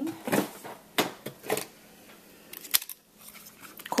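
A few separate sharp clicks and knocks as a plastic corner rounder punch is picked up and handled over a cutting mat.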